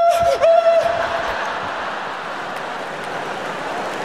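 A man's voice imitating a nervous big truck: a held, wavering high-pitched whine that stops about a second in. Then comes a steady wash of crowd laughter and applause.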